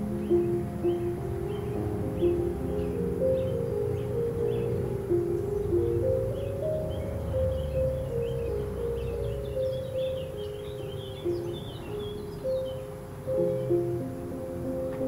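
Slow, gentle piano music sounding muffled and dull, as if heard through a wall from another room, with small birds chirping over it, thickest in the middle. A low rumble joins briefly in the middle.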